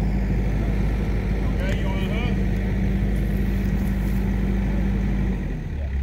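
Kubota compact track loader's diesel engine running steadily with a low hum, which drops off shortly before the end.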